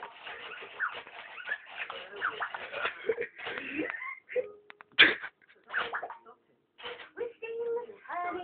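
Electronic children's learning toy being played with: button presses set off short recorded voice clips and electronic sounds, with a sharp click about five seconds in.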